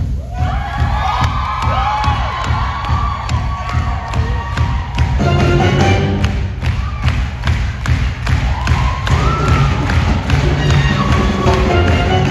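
Upbeat stage-musical backing track with a steady driving beat, with voices whooping and cheering over it. The whoops come in two stretches, one just after the start and another about three-quarters of the way through.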